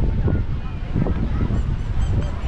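Wind buffeting the microphone, a steady low rumble, with faint voices and calls from the beach crowd behind it and a few short high chirps near the end.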